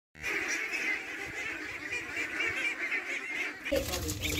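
A large flock of domestic ducks calling all together, a dense continuous chatter of overlapping quacks that stops suddenly near the end.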